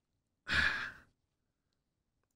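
A man's short sigh: one breathy exhale of about half a second, starting about half a second in.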